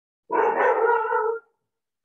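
A dog barking: one drawn-out bark lasting about a second.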